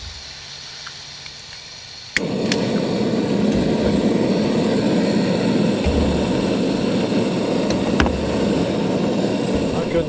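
Small gas canister camp stove: a faint hiss of gas, then a click about two seconds in as it lights, and the burner settles into a steady roar.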